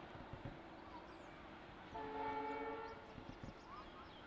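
Diesel locomotive horn, an EMD WDP4 with a twin-tone long-hood horn set, sounding one short blast of about a second, about two seconds in. It is heard from a distance, faint against the background.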